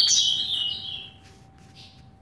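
Caged double-collared seedeater (coleiro) singing a loud, high, fast phrase that stops about a second in, followed by a couple of faint notes.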